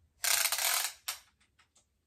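Cloth tape measure being pulled around the hips: a short rasping rush lasting under a second, a second brief one, then a few light clicks.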